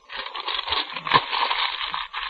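Radio-drama sound effect of a writer at work: a dense crackling clatter with one sharp knock about a second in.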